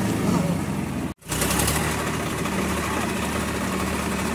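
Swaraj 855 tractor's three-cylinder diesel engine running steadily as the tractor wades through shallow river water, with a sudden brief dropout about a second in where the sound cuts.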